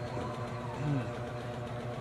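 A steady mechanical hum from a running motor, with a short low vocal murmur about a second in.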